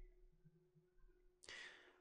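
Near silence: room tone, with a faint, short breath near the end.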